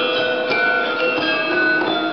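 A Balinese gamelan ensemble playing: struck bronze metallophones sounding many overlapping, ringing tones.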